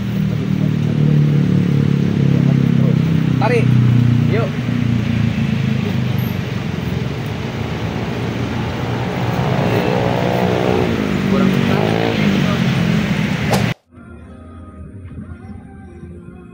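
Road traffic running past: a steady low rumble of vehicle engines with a few rising and falling engine notes, cut off suddenly near the end by a much quieter stretch.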